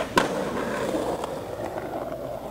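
Skateboard coming off the end of a concrete ledge: a sharp clack of the board landing just after the start, then the wheels rolling on concrete pavement, with a few light clicks.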